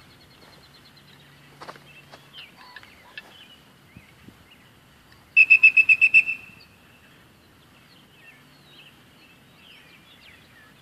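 A dog-training whistle blown in a quick run of about eight short pips, about five seconds in, lasting about a second. Faint bird chirps in the background.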